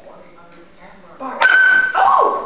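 A small dog lets out a loud, high-pitched yelp near the end, held on one note, while playing.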